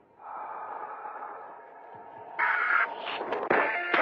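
Opening of a punk rock song: a noisy sustained sound swells in, grows louder partway through, and then the band comes in with electric guitar at about three and a half seconds.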